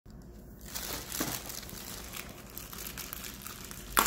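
Clear plastic wrapping crinkling and crackling in irregular bursts as hands handle it and pull it open around a cardboard box, starting about a second in.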